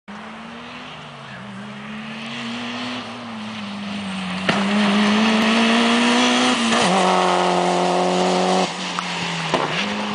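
Mitsubishi Lancer Evo IX's turbocharged four-cylinder engine running hard as the car approaches and passes close. It grows louder, gives a sharp crack a little before halfway, and stays loudest through the middle. The pitch shifts and settles, then the sound falls back near the end.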